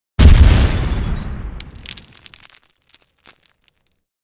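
Explosion sound effect: a sudden deep boom a fraction of a second in, dying away over about two seconds, followed by a few scattered crackles.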